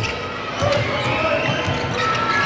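Basketball being dribbled on a hardwood court: a run of low bounces, under the faint background noise of the arena crowd.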